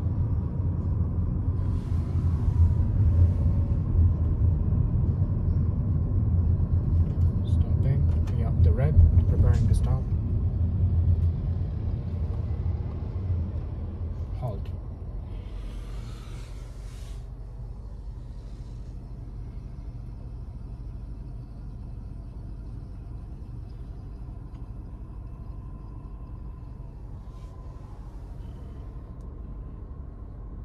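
Car cabin road and engine rumble while driving, fading as the car slows and comes to a stop about twelve to fifteen seconds in, then a quieter steady hum at rest. A brief hiss sounds soon after the stop.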